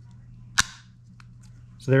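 A single sharp click as the Guardian Angel Micro Series safety light snaps onto its magnetic jaw clip mount.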